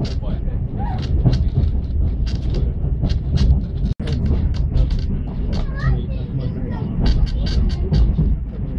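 On-board sound of a passenger train hauled by the Hr1 steam locomotive: a steady low rumble with frequent sharp clicks and knocks, and people's voices mixed in. The sound cuts out for an instant about four seconds in, at an edit.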